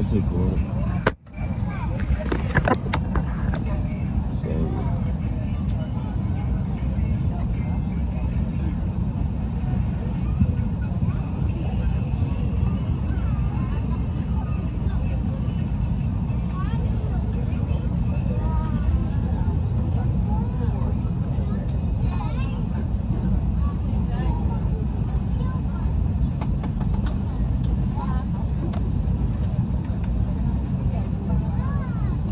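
Airliner cabin noise: a steady low rumble of engines and airflow, with faint voices in the background. The sound drops out for a moment about a second in.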